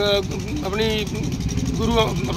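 Steady low rumble of street traffic, with short bursts of a man's speech at the start, in the middle and at the end.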